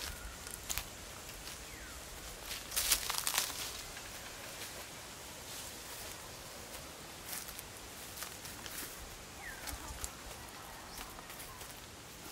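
Footsteps through grass, vines and dry leaves and twigs, a scattering of short rustling crunches with the loudest cluster about three seconds in, over a faint outdoor background.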